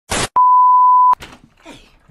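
A brief burst of hissing static, then a steady 1 kHz bleep tone held for just under a second: an edited-in glitch-and-beep sound effect.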